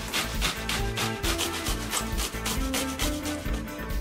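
A cucumber being finely grated on a metal box grater, in quick, repeated scraping strokes.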